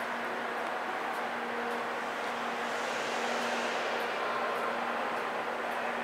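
Steady machinery hum filling a large pump hall: an even noise with a constant low tone under it, and the hiss lifting briefly about halfway through.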